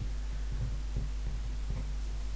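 Low steady hum, with no other clear event.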